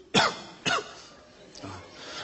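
A person coughing twice in quick succession, two short coughs about half a second apart.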